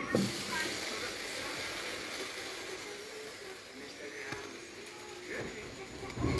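A steady hiss that starts suddenly, under faint, scattered speech.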